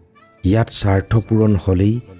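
Speech only: a voice reciting a line in Assamese, starting about half a second in after a short pause.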